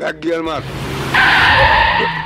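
A van's tyres screeching under hard braking: a loud squeal that starts a little over a second in and lasts about a second, over a low vehicle rumble.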